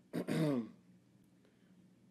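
A man clears his throat once, briefly, the pitch falling as it ends.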